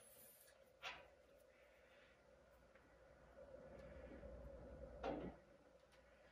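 Near silence with faint metal handling noise: a light click about a second in, then soft scraping and rubbing that swells briefly near the end as the gear is worked onto the leadscrew shaft over its key.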